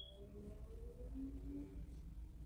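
Quiet room tone with a few faint, brief tones in the background.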